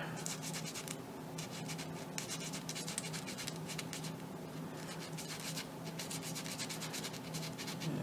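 A thin balsa spar being hand-sanded, pushed in and out of a tapered sanding slot and turned, giving a quiet, continuous run of light scratchy rubbing strokes, several a second. The spar is still catching in a few spots as it is sanded round.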